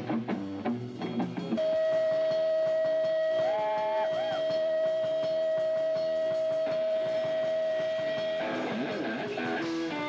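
Live rock band playing. About a second and a half in, a lead instrument holds one long note for about seven seconds, bending up briefly and back part way through, before the band's busier playing returns near the end.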